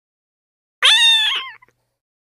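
A cat's single meow, starting a little under a second in: it rises quickly in pitch, holds, then falls away, lasting under a second.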